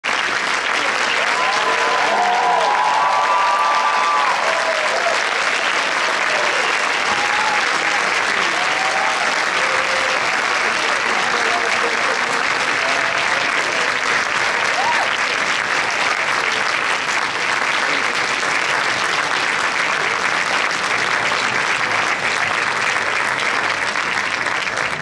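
Audience applauding steadily, with a few cheering voices in the first few seconds.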